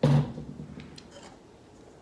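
A kitchen bowl set down on the countertop with a sudden knock and a short ring that dies away within about half a second, followed by a few faint light clicks.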